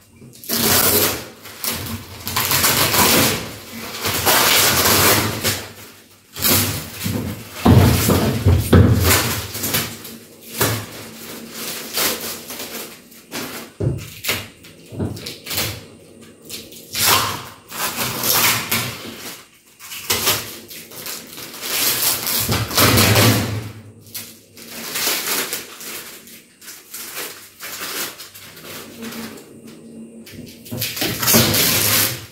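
Plastic wrapping film crinkling and tearing as it is cut and stripped off a new plastic wheeled trash bin. Irregular bursts of rustling are mixed with hollow knocks from the bin's plastic lid and body, the heaviest a little after the first quarter.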